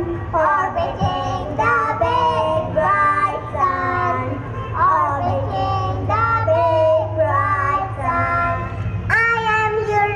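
A young girl singing through a stage microphone and PA, a sung phrase with held notes, the loudest starting about nine seconds in. A steady low hum runs underneath.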